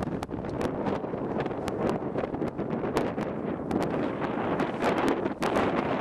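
Wind buffeting the camera microphone: a dense, steady rush that comes up suddenly at the start, with many short, sharp clicks scattered through it.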